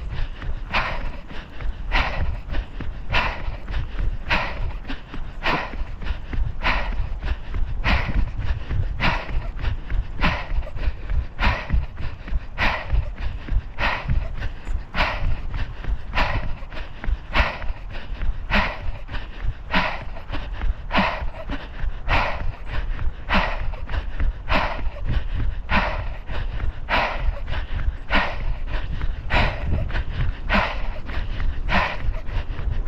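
A runner's heavy rhythmic breathing and footfalls while running hard, a short stroke about four times every three seconds, with wind rumbling on the microphone.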